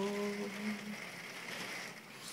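Steady rain falling outside, a soft even hiss heard through a window, with the drawn-out end of a spoken word over the first second.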